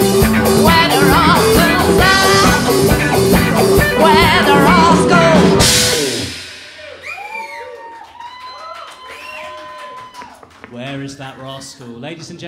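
Live rock band, with electric guitars, drum kit and a female lead vocal, playing the last bars of a song and ending on a final crash about six seconds in. The audience then claps and cheers, and near the end an electric guitar starts picking quietly.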